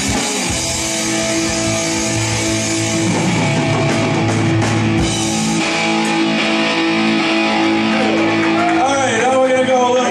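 Live punk rock band with distorted electric guitars, bass and drum kit holding one steady ringing chord, with cymbal hits, as the song ends. A man's voice comes in over the microphone near the end.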